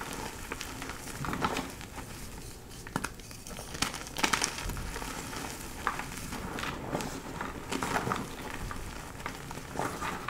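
Hands squeezing and crumbling gym chalk blocks in a bowl of loose powder, with soft irregular crunches and powdery rustling.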